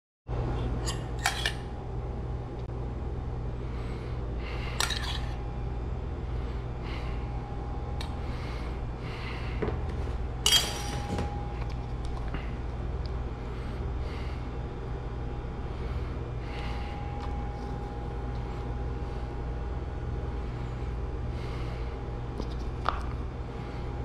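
Steady low machine hum with a faint high whine, broken by a few sharp clicks and crackles of a clear plastic tub being handled, the loudest about ten seconds in.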